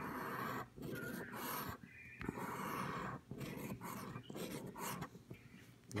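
A scratch-off lottery ticket being scratched: a series of short scraping strokes with brief pauses as the coating is rubbed off the play area.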